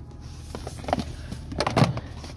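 Amplifier power wire being pulled through a plastic trim channel, with a few short rubbing scrapes against the plastic, the loudest near the end.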